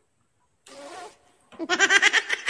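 A man's laughter, a quick run of short voiced pulses starting about a second and a half in and loud, after a brief softer voiced sound just before the one-second mark.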